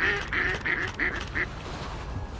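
Ducks quacking: a quick run of about six short calls that stops about a second and a half in.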